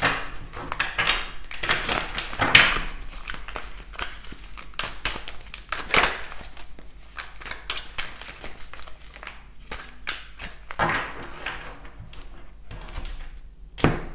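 A deck of tarot cards being shuffled by hand: a steady patter of card edges flicking and sliding, with louder bursts every few seconds.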